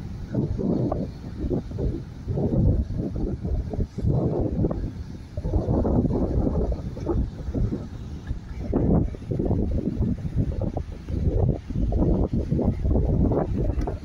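Wind buffeting a phone's built-in microphone: a loud, gusty rumble that rises and falls irregularly.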